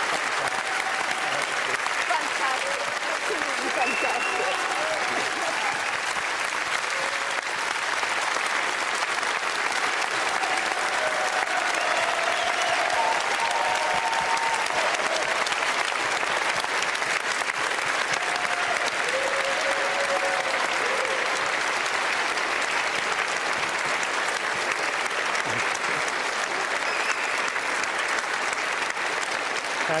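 Studio audience applauding steadily and at length, with a few voices heard faintly over the clapping.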